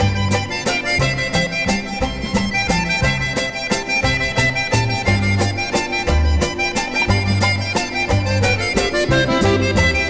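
Instrumental polka played by an accordion-led band, with a bouncing bass line marking the beat.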